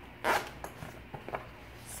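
Zipper on a fabric breast pump bag being pulled open: one short rasp about a quarter second in, then a couple of faint ticks from the zipper pull.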